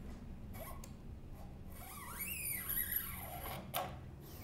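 A new steel guitar string being drawn through the hole in a Fender Jaguar's tailpiece and pulled up along the guitar, scraping against the metal with a pitch that rises and falls for about a second midway, then a short click near the end.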